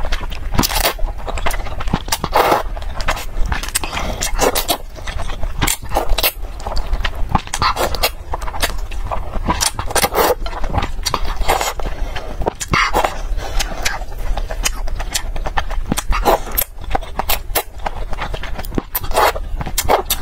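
A person slurping and chewing noodles from a spicy broth close to a clip-on microphone: a string of wet slurps and mouth noises.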